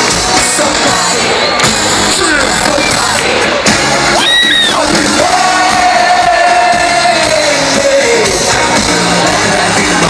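Live rap-pop concert music from a stadium PA, loud and recorded from within the crowd, with a singing voice that holds one long note from about five to eight and a half seconds in, over crowd noise.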